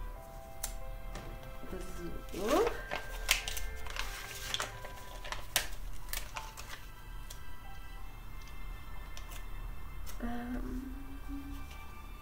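Paper sticker sheets rustling and crackling as stickers are peeled off and handled, most busily about two to five seconds in, over soft background music.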